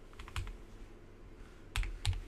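Computer keyboard keys being tapped to type digits: a quick cluster of key clicks about a third of a second in, then two more near the end.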